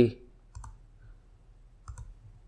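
Two computer mouse clicks about a second and a half apart, the second the sharper, over a faint low hum.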